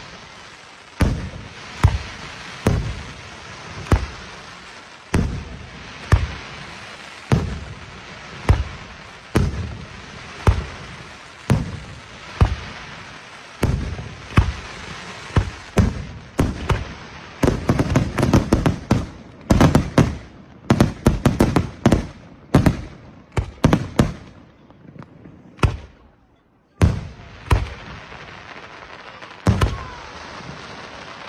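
Aerial firework shells bursting, about one bang a second at first. Partway through comes a dense, rapid volley of bursts. It is followed by a brief lull before single bursts resume near the end.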